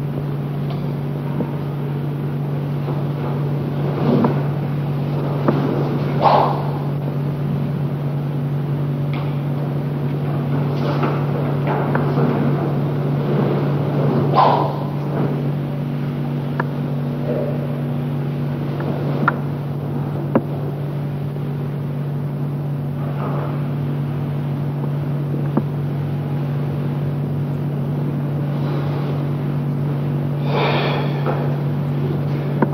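A steady low hum runs throughout, with short sharp noises breaking through every few seconds; the loudest come about six and fourteen seconds in.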